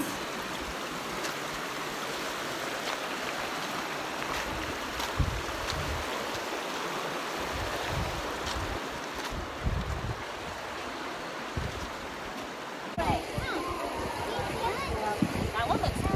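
The Virgin River rushing over rocks in the Zion Narrows: a steady rush of running water, with a few low bumps now and then.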